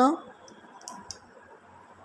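The tail of a spoken question over a group voice call, then a pause of faint line hiss with two faint short clicks about a second in.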